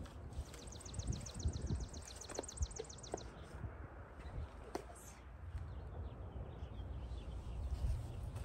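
A small songbird singing a fast trill of high repeated notes, about ten a second, for about three seconds. Light clicks and knocks from handling plastic nursery pots and soil sound under it.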